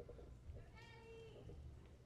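Near-quiet hall with one faint, high-pitched vocal call lasting about half a second, a little under a second in.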